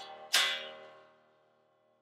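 Washburn N4 electric guitar, fitted with a brass big block and noiseless tremolo springs, strummed once about a third of a second in. The chord rings and fades out within about a second, while the tuning is still not settled.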